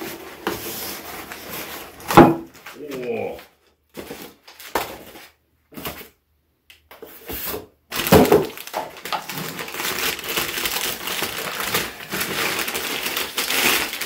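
Cardboard box being handled, with a sharp knock about two seconds in, then from about eight seconds a steady crinkling of brown kraft packing paper as it is unwrapped from a hand plane.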